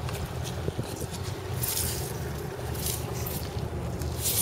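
Wind buffeting the microphone over a thin wash of water across wet sand, with a few soft scrapes as a sneaker steps onto wet seaweed and sand.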